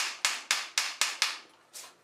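Hammer blows driving an iron end fitting onto the end of a new hickory buggy pole: sharp metal strikes about four a second, with a lighter final blow near the end.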